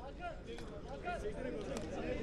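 Indistinct chatter of several young men's voices talking at once, faint and overlapping, with no single clear speaker.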